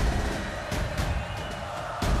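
Opening theme music for the TV programme, with a heavy bass and sharp percussive hits.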